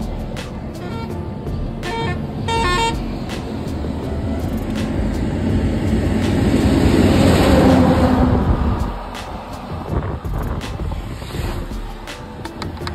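Roadside highway traffic: a vehicle horn gives several short toots in the first three seconds. A passing vehicle then swells to the loudest point about seven to eight seconds in and fades away.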